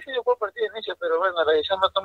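Speech only: a man answering, heard over a telephone line.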